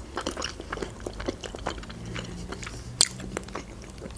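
Close-miked chewing of soft boiled pelmeni dumplings in cheese sauce, with many small wet mouth clicks. One sharper click sounds about three seconds in.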